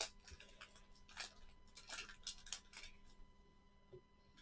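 Wax-paper wrapper of a 1989 Fleer baseball card pack being torn open and unwrapped by hand: faint, scattered crinkles and crackles.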